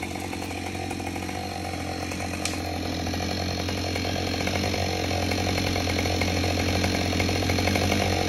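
Chainsaw engine idling steadily, getting gradually a little louder.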